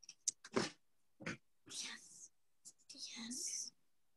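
Short, breathy fragments of a person's voice, muffled and unclear, coming through a video call, with a few sharp clicks in the first second.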